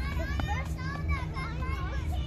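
Children's high-pitched voices calling and chattering at play on a playground, over a steady low rumble.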